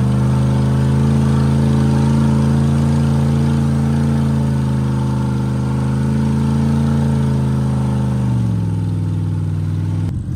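Dodge 1500 pickup engine running under load at steady revs while towing a car on a tow rope. About eight seconds in, the revs drop as it eases off.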